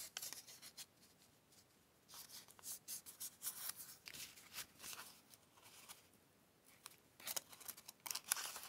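Faint paper handling: a small white paper strip being folded and creased by hand, with soft scratchy rustling that comes in several short spells.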